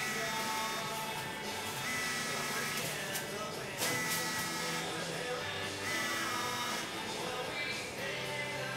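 Background music from a radio playing in the room, with held notes and sliding pitches throughout. Two short clicks fall a little after the middle.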